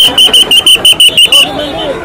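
High-pitched electronic beeping, very even and fast at about eight beeps a second, from the backhoe loader's warning alarm; it stops about a second and a half in and a man's voice follows.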